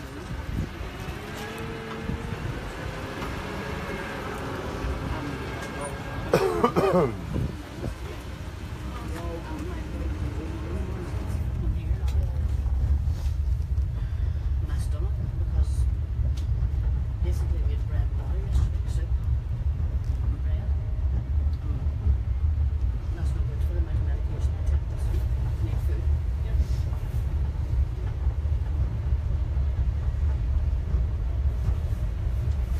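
Tractor-drawn land train running, heard from inside one of its carriages: a steady low rumble of engine and rolling carriages that grows louder about eleven seconds in and then holds.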